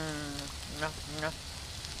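A woman's held, steady 'mmm' while eating, then two short words, over a campfire crackling faintly in the background.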